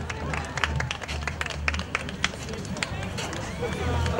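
Scattered applause from a small outdoor audience, separate claps rather than a dense roar, with a low pulsing beat underneath.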